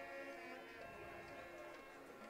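Faint music: a few held notes that change pitch about once a second.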